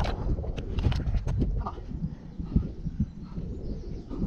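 Wet mud squelching and sucking in a series of short, irregular strokes as a sheep stuck in a tidal mudflat is pulled free by hand, over a low rumble.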